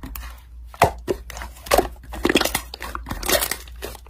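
Hands kneading, folding and squeezing soft yellow slime, giving irregular sticky pops and crackles.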